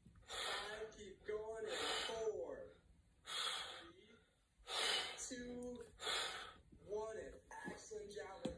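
A man breathing heavily after dumbbell arm exercises: loud, gasping breaths about every second and a half, with some short voiced groans or mutters between them.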